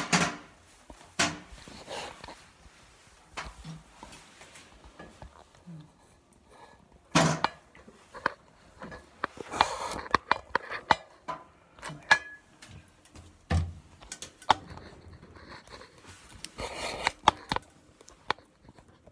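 Scattered clicks, knocks and rustles of handling in a small tiled room, the loudest about 7 s in and near the end.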